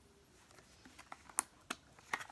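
Quiet, sharp plastic clicks and taps from handling a squeeze bottle of hair product, a handful of them with the loudest near the middle.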